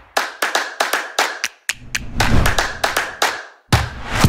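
A rhythmic hand-clap beat, about three to four claps a second, with a deep bass note through the middle. The beat breaks off briefly and comes back with a loud hit just before the end.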